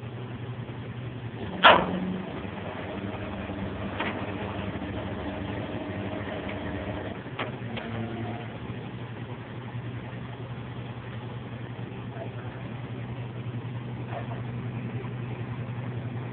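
Flatbed tow truck's engine running at a steady idle, with a loud sharp metallic clank about two seconds in and fainter clicks around four and seven to eight seconds. A second, higher hum runs for a few seconds after the first clank.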